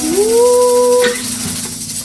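A woman's voice singing a final note that slides up and holds for about a second over an acoustic guitar, then stops while the guitar chord rings on more quietly.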